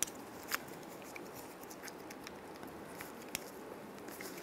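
Faint, scattered small clicks of plastic and metal parts being handled as a new cover is slid onto a car door handle's lock cylinder and lined up.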